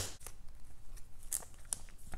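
Faint rustling of paper and plastic card packaging being handled, with a few light clicks.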